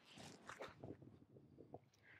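Near silence, with faint scattered rustles and soft ticks.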